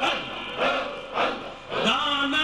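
Short chanted vocal exclamations in a Sufi devotional recitation, about two a second, each a brief syllable rising sharply in pitch.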